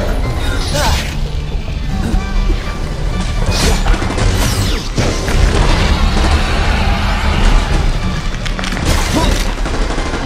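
Battle sound effects from an audio drama: heavy booms and crashing impacts over a deep continuous rumble and background score. Sharp strikes land about a second in, around four and five seconds, and again near nine seconds.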